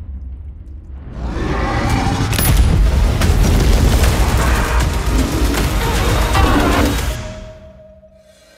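Film trailer sound mix: a low music drone, then from about a second in a loud, long explosion with crackling over the music, dying away about a second before the end and leaving one held tone.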